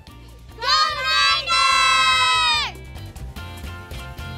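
One long, loud cheer in a high voice, gliding up at the start, held for about two seconds, then falling away. It sits over background music with a steady beat.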